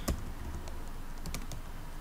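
Computer keyboard keys clicking as a few words are typed: a handful of separate, irregularly spaced keystrokes over a low steady hum.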